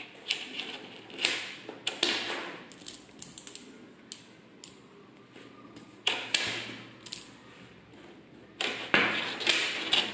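Small magnetic metal balls clicking and clacking as they snap together and are pulled apart from a handful, in short clusters of rapid clicks, loudest near the end.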